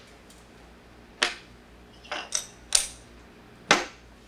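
Small cut wooden parts being set down one by one on a wooden workbench: about five short, sharp knocks, the first about a second in, a quick cluster in the middle and a loud one near the end.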